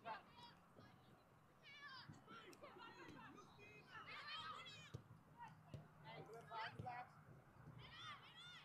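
Faint, distant high-pitched voices of players calling to each other across a soccer field, coming and going in short shouts, with a couple of sharp knocks about five to six seconds in.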